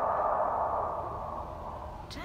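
A sustained drone from the TV episode's soundtrack that holds steady and slowly fades as the picture goes to black.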